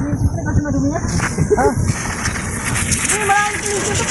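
Compressed air from a dump truck's air tank hissing steadily out of a hose, starting about a second in. It is set up to blow dust out of the truck's air filter elements.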